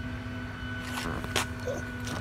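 A steady low hum with two light clicks about a second in, as a wrench is handled against a steel scissor jack.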